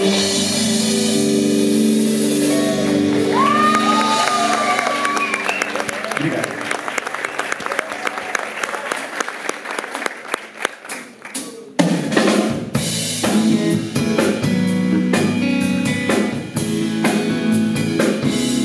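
Live pop-soul band (drums, bass, keyboards, electric guitar) holding a final chord, then audience cheering with whistles and a patter of applause that dies away. About twelve seconds in the band comes back in loudly with drums and sustained chords.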